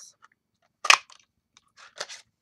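Handheld craft punch cutting a ticket shape out of cardstock: one sharp crunching snap about a second in, followed by a couple of faint rustles near the end.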